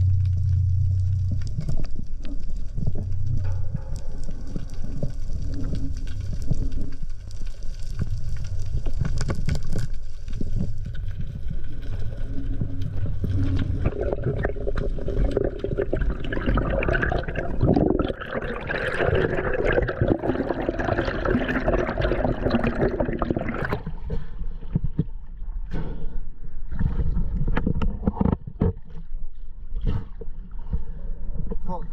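Underwater sound through an action camera's housing on a breath-hold spearfishing dive: low rumbling water noise with scattered clicks and ticks. About halfway through, a louder rushing, gurgling stretch lasts several seconds during the ascent, then the sound drops back to a low rumble.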